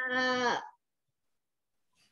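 A young girl's voice holding a long, drawn-out "the…" at a steady pitch while searching for the next word, breaking off just over half a second in.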